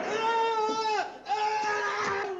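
A person screaming in two long, high-pitched wails, the first ending and the second starting about a second in.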